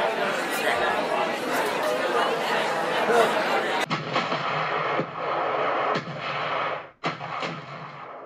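Several voices talking loudly over one another, cut off abruptly about four seconds in; then a few sharp bangs like artillery fire, roughly a second apart, fading out near the end.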